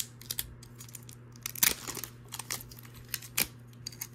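A small mystery-mini package being torn open and crinkled by hand: irregular crackles and clicks of thin wrapping, loudest a little over one and a half seconds in.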